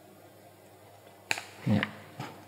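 Quiet room tone, then late on a single sharp click followed by a brief low vocal sound as a book page is lifted and turned.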